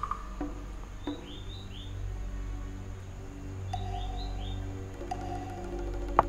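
Background music with held tones, with birds chirping in two short runs of about four quick chirps each, about a second in and again near four seconds in.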